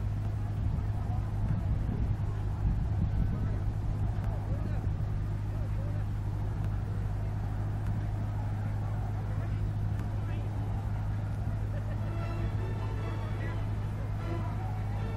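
Steady low engine hum, unbroken and unchanging, with people's voices faint in the background.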